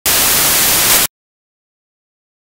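A loud burst of static hiss about a second long, starting and cutting off abruptly.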